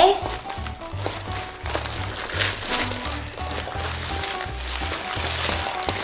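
Clear plastic bag and packaging crinkling and rustling in bursts as a kit is unpacked by hand, over background music with a steady, repeating bass line.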